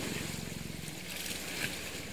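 Boat engine running steadily at low revs, a low pulsing drone, with the hiss of wind and sea water over it.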